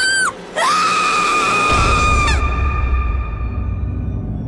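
Horror trailer soundtrack: a woman screams, a short cry and then one long, high, held scream that cuts off suddenly about two and a half seconds in. A low rumbling drone rises under it and carries on after.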